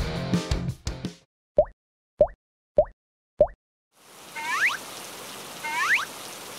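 Background music that stops about a second in, then four short rising cartoon 'plop' sound effects, evenly spaced. From about two-thirds of the way through, a steady rain hiss sound effect begins, with two rising whistling glides over it.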